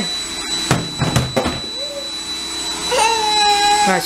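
A steady motor hum with a thin high whine, a few knocks about a second in, and near the end a toddler's long, high-pitched held vocal sound.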